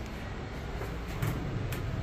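Low, steady mechanical hum inside an elevator cab, with a slight swell a little over a second in.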